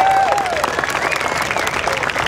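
Crowd applauding, with a few whooping shouts, as a pipe band finishes its set.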